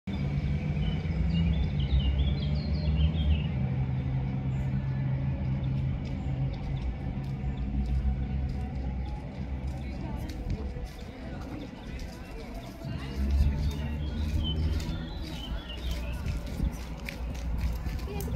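Outdoor ambience: a low steady rumble, with a few short bird chirps in the first few seconds and distant voices.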